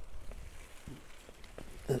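Faint rustling and a few soft clicks as a sugar beet root is prised out of sticky soil with a garden fork, over a low rumble of wind on the microphone.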